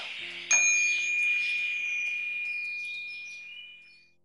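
A small bell or chime struck once, about half a second in, giving one clear high ringing tone that fades away over about three seconds.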